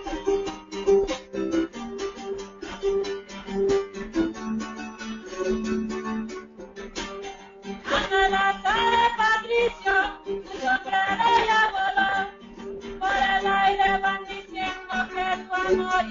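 Small acoustic guitar strummed in a steady rhythm, with a woman singing over it from about eight seconds in, pausing briefly and then going on.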